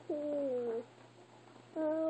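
A young child's voice making two drawn-out cooing 'ooh' sounds: a short one near the start that sags slightly in pitch, then a long one held on one steady note beginning near the end.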